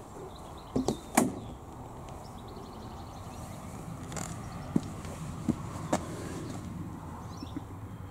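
Door handle and latch of a 1972 Rover P5B clicking as the driver's door is opened: two sharp clicks about a second in, then a few fainter clicks.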